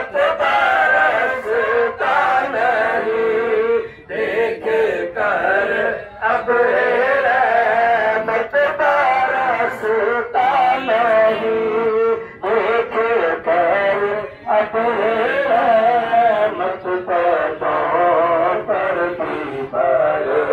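A man singing a naat, a devotional song in praise of the Prophet, amplified over a public-address loudspeaker: long wavering held notes broken by short pauses every couple of seconds.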